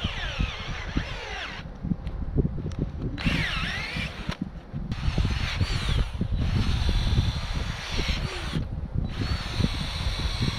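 Cordless drill turning an auger bit to bore a hole in the ground. It runs in spells of a few seconds with short stops, its motor whine rising and falling under load, over steady knocking as the bit bites into the soil.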